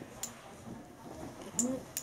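Three sharp clicks of the metal rods and steel balls of a magnetic building set knocking and snapping together as pieces are handled, with faint voices in the background.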